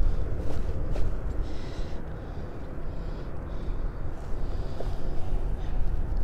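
Wind buffeting the microphone as a steady low rumble, with a few faint clicks.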